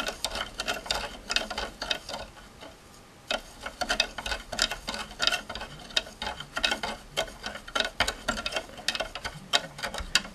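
A metal spoon ticking and clinking irregularly against the side of a clear plastic cup while stirring, with a brief lull about two to three seconds in. It is stirring hot water until the crystal-growing powder (monoammonium phosphate) has dissolved into a saturated solution.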